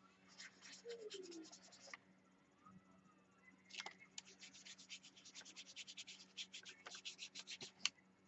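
Faint paintbrush scrubbing on a paper journal page in quick, short scratchy strokes. There are two runs of strokes with a pause of about two seconds between them, over a steady low hum.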